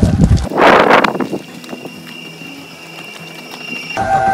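Footsteps crunching on gravel with a rush of noise in the first second, then a steady high machine whine carries on quietly from about a second in.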